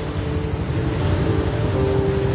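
Acoustic guitar playing softly with held notes, over a steady low rumble of street traffic.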